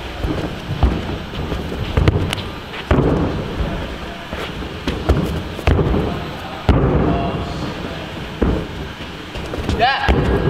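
A series of heavy thuds about once a second from bare feet and hands striking a sprung gymnastics floor during tumbling passes, each booming and dying away slowly in a large echoing hall.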